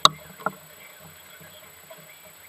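Two sharp knocks on a catamaran's hull or deck, about half a second apart, the second one fainter, over a low steady background.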